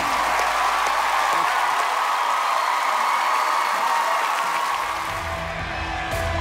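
Studio audience applauding and cheering as the song ends, its last low notes dying away in the first couple of seconds; soft background music comes in near the end.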